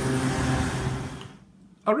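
Street traffic noise with a steady vehicle-engine hum, fading out about a second and a half in. A man starts speaking right at the end.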